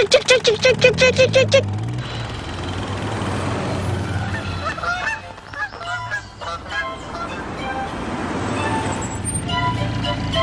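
Cartoon jackhammer pounding in rapid repeated bursts, stopping about a second and a half in. A car engine then runs steadily, with a few bird chirps in the middle, and an ice cream truck's jingle begins just before the end.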